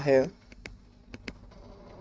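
Faint taps and clicks of a stylus on a tablet screen while a word is handwritten: a few scattered ticks.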